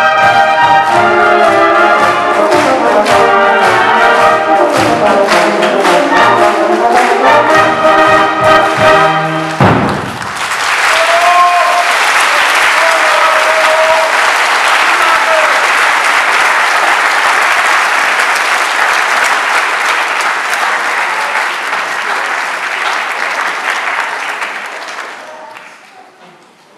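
A concert wind band with brass, saxophones and drums plays the closing bars of a piece over a steady drum beat, ending on a final chord about ten seconds in. Then an audience applauds, the clapping fading out near the end.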